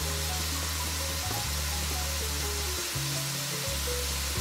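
Steady sizzle of cubed potatoes frying in hot vegetable oil in a cast-iron kadai, the oil bubbling at a lively rate. Background music with low held notes that change every second or so plays along.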